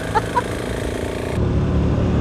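Motorcycle engines heard from onboard while riding. First a KTM 690 SMC R single-cylinder supermoto cruising, then an abrupt cut about a second and a half in to a KTM 1290 Super Duke R V-twin running louder and deeper.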